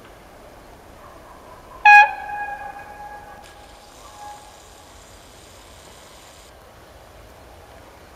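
Approaching passenger train sounding one short, loud horn blast about two seconds in, its tone trailing off over the next two seconds. A faint high-pitched whine follows for about three seconds, then cuts off.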